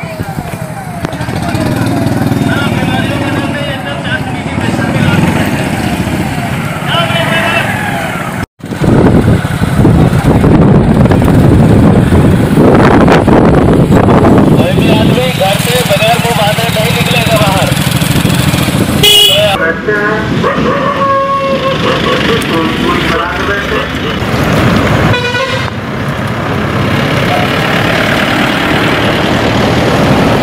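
Police motorcycles riding past in a convoy, their engines running, with voices mixed in and horn toots about two-thirds of the way through.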